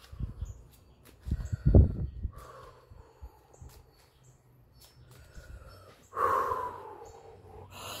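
A woman catching her breath with slow, deep breaths, the longest and loudest near the end. A few low thumps come about a second and a half in.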